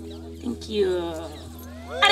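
Acoustic guitar's final chord ringing out and fading over a steady low amplifier hum. A brief gliding, voice-like call sounds about a second in.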